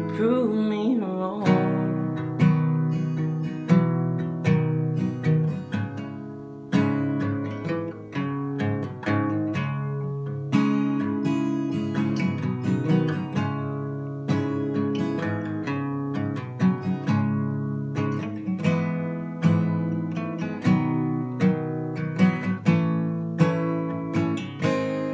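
Capoed acoustic guitar strummed in a steady chord pattern through an instrumental break, without vocals. A held sung note wavers and fades out in the first second or so.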